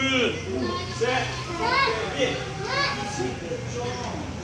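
Children's voices talking and calling out in short, high-pitched phrases, over a steady low hum.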